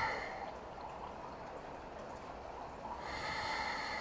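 A woman breathing audibly through the nose while holding a standing balance pose. One breath trails off just after the start, and another comes about three seconds in, lasting about a second.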